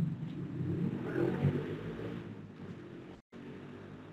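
Vehicle engine noise from an old film's soundtrack, played back over web-conference audio. It fades over the last couple of seconds and drops out briefly about three seconds in.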